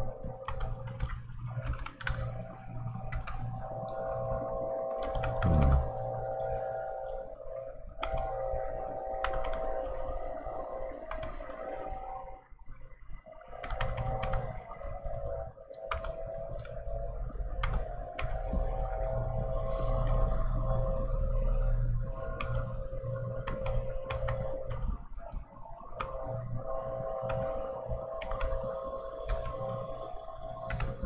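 A heater that has just switched on, humming steadily with a few held tones, over frequent light clicks and taps from a keyboard and drawing tablet.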